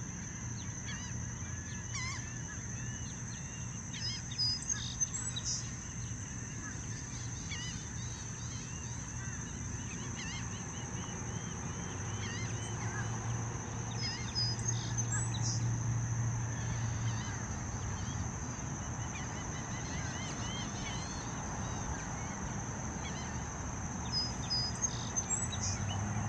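Wetland ambience of scattered bird calls, with honking, goose-like notes among short chirps. The calls cluster about four seconds in and near the end. Under them run a steady high whine and a low hum that swells in the middle.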